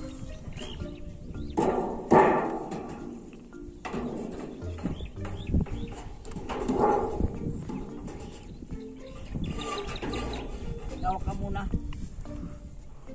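Scrapes and knocks from a galvanized sheet-metal rain gutter being handled and pressed into place against a wall, the loudest about two seconds in, over background music.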